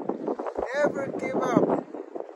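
A voice talking, the words not made out, with wind noise on the microphone.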